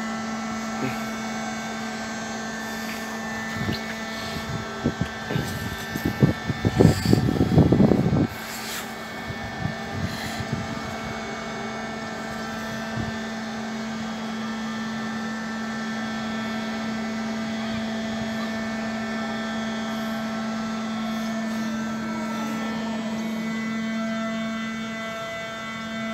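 Swing-bridge drive machinery running with a steady hum while the span swings. A tone falls in pitch near the end as the machinery slows. A spell of loud irregular thumps and rumbles comes between about four and eight seconds in.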